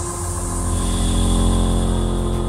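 Electronic music: a sustained synthesizer drone chord over a deep bass, held steady and swelling slightly in level, with a high held tone entering under a second in.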